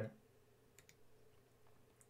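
Near silence with two faint computer mouse clicks close together, a little under a second in.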